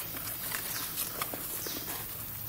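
A hand scraping and rustling through dry leaf litter and soil on the forest floor, with a quick run of small crackles and snaps, while digging out a wild mushroom.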